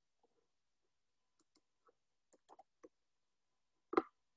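Faint, scattered clicks of a computer keyboard and mouse, about ten light taps at uneven intervals with a sharper click just before the end.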